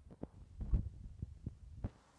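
Irregular low thumps and knocks, with a few sharper clicks, from the person filming moving about with a handheld camera. The loudest thump comes about three-quarters of a second in.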